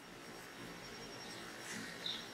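Quiet room tone: a faint steady hiss, with a slight soft rustle near the end.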